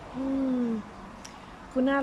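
A woman's short closed-mouth "mmm" hum, steady and slightly falling in pitch, then speech resumes near the end.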